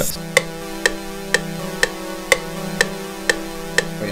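Software synth melody loop playing back in FL Studio: a held synth tone sounds throughout while short, sharp notes strike evenly about twice a second.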